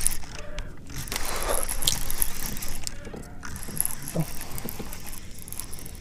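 Baitcasting reel being cranked under load, an uneven gear whir, as a hooked bass is reeled in.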